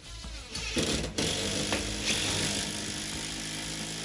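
A DeWalt cordless driver runs steadily as it sinks a lag bolt through a steel strut channel into a ceiling stud. The motor starts about a second in and stops sharply at the end.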